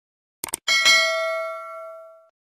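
A few quick clicks, then a notification-bell ding that rings out and fades away over about a second and a half: the sound effect for the 'subscribe and get notification' button.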